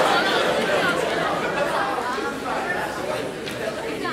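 Indistinct chatter of several voices talking at once in a large hall, with no clear words.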